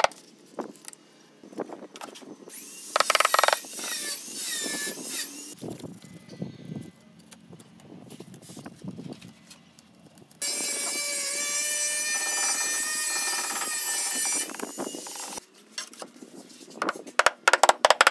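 Rubber mallet tapping a large ceramic wall tile into its adhesive bed, with scraping and rubbing as the tile is worked into place. About ten seconds in, a steady high power-tool whine runs for about five seconds and cuts off suddenly; a quick run of mallet taps comes near the end.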